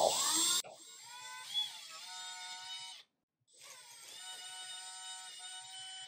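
Cordless drill running at steady speed, boring a pilot hole into a wooden dowel plug glued into a stripped cam-screw hole in particle board, with a steady motor whine. It runs in two stretches, cut off sharply about halfway and starting again a moment later, with a brief louder cutting noise at the very start.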